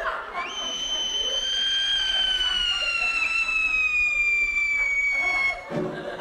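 A performer's long, very high-pitched vocal tone, rising briefly and then sliding slowly down in pitch for about five seconds before breaking off, made as a comic slow-motion sound effect of the shot put throw.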